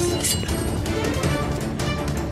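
Dramatic film score music with the clashes and blows of a sword fight mixed in, several sharp hits spread through it.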